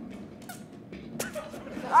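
A man straining to open a stuck glass beer bottle cap: a couple of faint short clicks, then a rising cry of effort right at the end. The cap is very tight.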